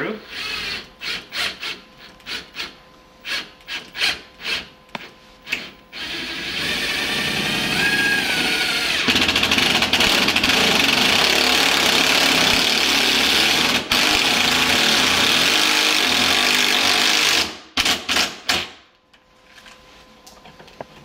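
Bosch Impactor cordless impact driver driving a long screw into a wall. Short stop-start bursts come first. From about six seconds in it runs continuously, getting louder about nine seconds in as the screw goes in, and cuts off suddenly near the end, followed by a couple of clicks.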